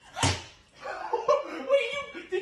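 A sharp smack about a quarter second in, then a young woman's high-pitched, startled cries as she is jolted awake.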